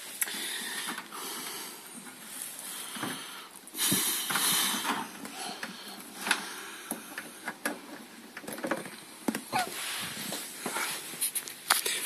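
Handling noise: rustling, scraping and scattered clicks as the camera is moved about, with a louder rushing burst about four seconds in.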